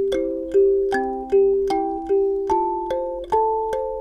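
A mahogany acoustic kalimba played with the thumbs: a slow, steady melody of plucked metal tines, often two notes together, each note ringing on under the next. The tone is light and bright, the kind the player credits to the acoustic body.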